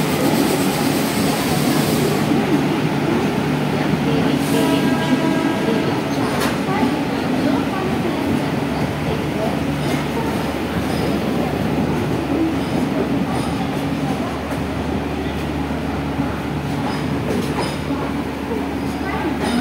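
Passenger train coaches rolling slowly past along a station platform, a steady rumble of wheels on the rails, with a brief high-pitched squeal about five seconds in.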